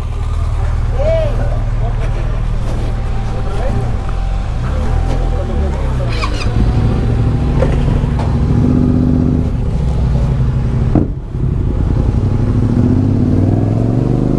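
Adventure motorcycle engines idling and running at low speed, their pitch rising and falling a few times as the bikes are turned and pulled away slowly.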